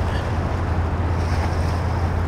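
Wind on the microphone over flowing river water: a steady rushing noise with a constant low rumble.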